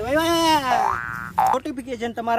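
A man's drawn-out, wavering groan, then a quick rising boing-like comic sound effect about a second in and a short bright twang, with talking starting near the end.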